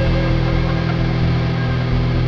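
Instrumental passage of a doom/gothic metal song with distorted electric guitars, bass and programmed drums holding sustained chords. The treble is filtered off throughout, giving a muffled sound until the full mix returns just after.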